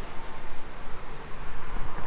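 Steady road noise from freeway traffic blended with a rushing river, with rustling and footsteps through dry brush and grass.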